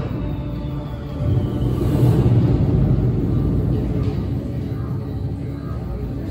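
Film soundtrack music with a deep rumble underneath, played through a ride's pre-show sound system. A faint high tone slowly falls in the first few seconds.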